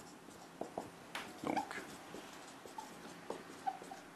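Marker pen writing on a whiteboard: faint, irregular squeaks and scratches as the letters are stroked out.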